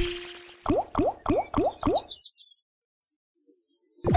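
Big Bass Amazon online slot's spin sound effects. A deep falling watery whoosh fades out at the start. Then five short rising plops about a third of a second apart, one as each of the five reels lands, followed by near silence.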